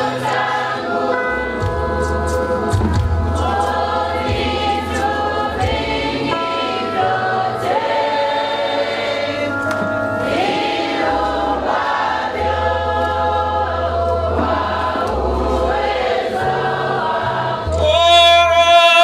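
A church congregation singing a Swahili hymn together, led by a male song leader on a microphone, over electric guitar and bass accompaniment. The voices hold long notes and slide between them above a steady bass line.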